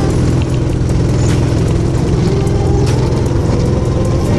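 Go-kart engine running steadily under throttle, its pitch rising slightly over the last couple of seconds.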